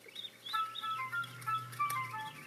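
Cartoon bird chirps over light background music, played through a TV speaker: a few short high tweets at first, then a run of short pitched notes.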